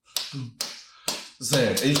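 A few sharp hand claps, about half a second apart, followed by a man starting to speak.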